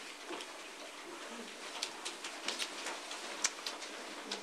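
Papers being handled and people moving about a meeting room: scattered light rustles and small clicks over a faint steady hiss, busiest in the second half.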